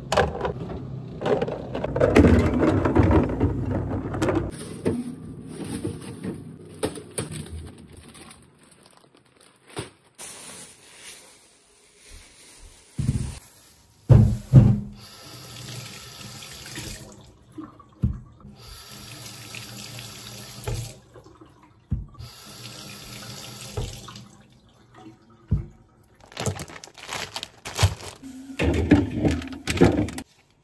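Kitchen faucet running into a stainless steel sink in stretches, water splashing over an apple as it is rinsed. Knocks and clatters of items being handled come in between, with a louder stretch of handling noise in the first few seconds.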